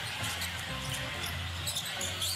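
A basketball being dribbled on a hardwood court, with steady low background music in the arena.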